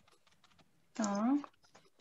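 Faint, quick, irregular clicks, with a woman saying a single short word about a second in.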